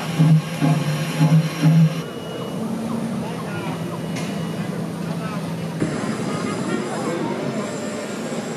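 People chatting over a low hum. The hum pulses about three times a second, holds steady from about two seconds in, and the sound changes about six seconds in.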